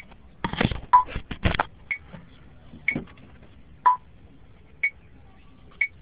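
Electronic metronome beeping at 60 beats per minute, one short beep a second, with every third beat at a different pitch. A couple of louder brief noises come about half a second and a second and a half in.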